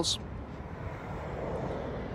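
Steady low rumble of distant vehicle noise outdoors, swelling slightly toward the end.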